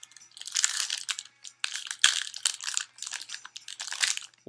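Plastic wrapper of a trading card pack crinkling as hands work it open. The rustling comes in two main spells, about half a second in and about two seconds in, with smaller crinkles after.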